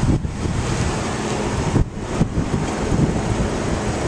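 Wind buffeting the microphone outdoors: an uneven rushing rumble with two brief dips, one near the start and one about halfway through.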